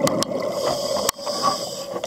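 Underwater sound of a scuba diver breathing through a regulator: a hissing inhale that starts about half a second in and runs almost to the end, with a few sharp clicks near the start and about a second in.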